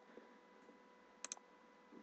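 Near silence, broken by a computer mouse button clicked twice in quick succession about a second in.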